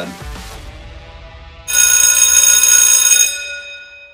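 A bell rings loudly and steadily for about a second and a half, then rings out and fades. It is the interval timer's bell, signalling the start of the first work period, a one-minute warm-up.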